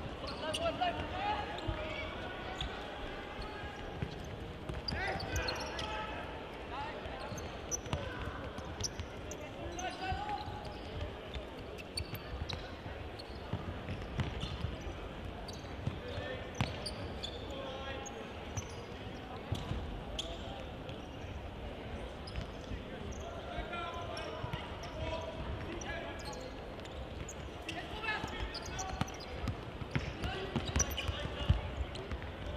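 Indoor football match in a sports hall: the ball is repeatedly kicked and bounces on the hard court floor, with a sharp knock each time. Players and spectators call and shout throughout.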